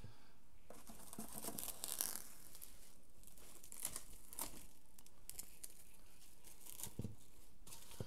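Plastic cling wrap being pulled and stretched over a stainless steel mixing bowl, crinkling with irregular crackles throughout.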